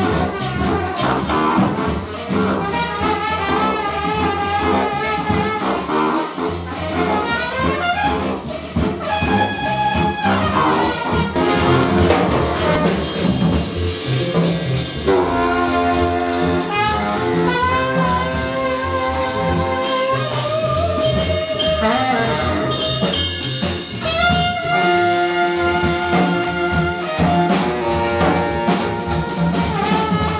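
Live jazz combo playing: trumpet and baritone saxophone carry a melody of held and moving notes over upright bass, congas and drum kit.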